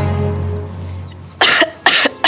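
A young woman coughing, two short hard coughs from about a second and a half in, as the background music fades out.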